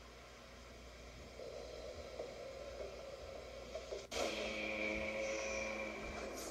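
TV series soundtrack score played through a laptop speaker: quiet at first and slowly building, then an abrupt cut about four seconds in to a louder held drone of steady tones.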